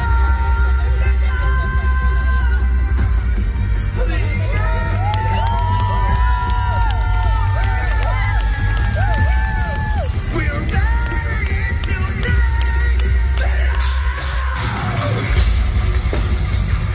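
Live rock band in an arena: a steady low bass drone with the singer's voice over it and the crowd cheering. Near the end the full band, drums and guitars, comes in.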